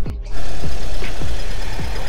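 Background music with a steady deep beat. From just after the start, the engine of a classic Volkswagen Beetle, an air-cooled flat-four, is heard as the car drives slowly past.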